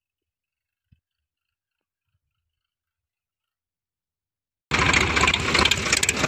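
Near silence, then, about two thirds of the way in, a loud Sonalika tractor diesel engine cuts in suddenly and runs on steadily with its silencer removed: a coarse open-exhaust sound.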